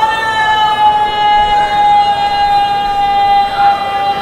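Public-address feedback howl: one loud, steady high tone with overtones, sinking slightly in pitch as it holds.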